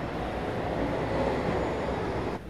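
Steady rumbling background din with no clear tone or rhythm, swelling slightly in the middle.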